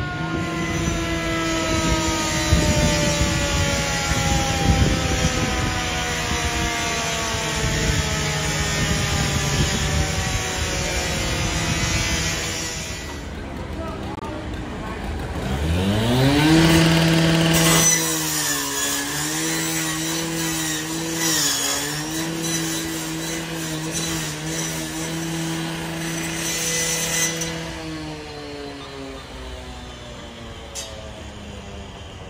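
Street noise at a fire scene. About halfway through, a small engine or motor revs up, holds a steady pitch with a few brief dips, then cuts off near the end. Before that there is a steady rushing hiss with a slowly falling drone.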